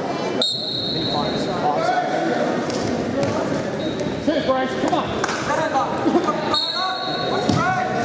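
Referee's whistle blowing a high, steady tone about half a second in to start the wrestling bout, and again near the end, over shouting from coaches and spectators in a gym. Short knocks of bodies and feet on the mat run through it.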